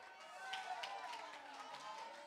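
Faint, distant voices from the congregation calling out in praise.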